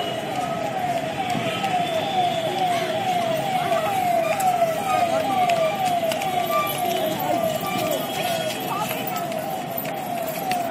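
An electronic warning tone repeating a short falling note about two and a half times a second, steadily, over the chatter of a crowd of passengers.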